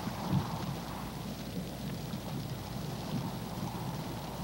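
Steady low rumbling background noise with a faint low hum underneath and no distinct sounds standing out.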